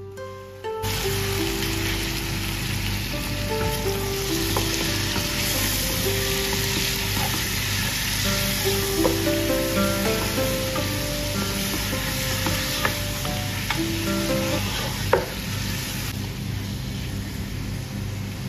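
Raw mutton pieces dropped into hot oil in a pot, sizzling loudly as they fry and are stirred, with a few sharp clicks from the stirring. The sizzle starts a little under a second in and eases near the end. Soft background music with plucked notes plays throughout.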